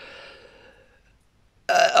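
A woman's short breathy exhale during a pause in her speech, fading out within about a second.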